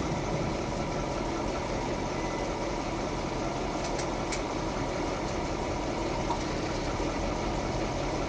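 A car engine idling steadily, with a couple of faint clicks about four seconds in.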